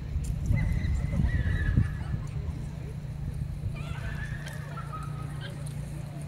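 A horse whinnying twice, high calls that step down in pitch, over dull thuds of hooves and cattle moving in soft arena dirt during the first two seconds, with a steady low hum underneath.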